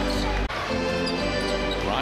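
Basketball arena ambience: crowd noise with music playing over the arena sound system, and a basketball being dribbled up the hardwood court.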